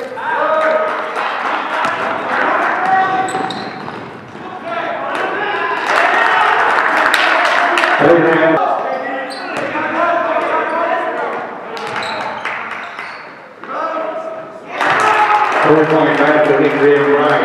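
Live basketball game sound in an echoing gym: players and spectators calling out over one another, a ball bouncing and shoes squeaking on the court. The crowd noise swells about six seconds in.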